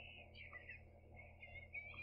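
Near silence: faint room tone with a steady low hum and a faint, wavering high sound.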